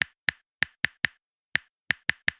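Typing sound effect: a series of sharp single key clicks at an uneven pace, about seven in two seconds, with dead silence between them.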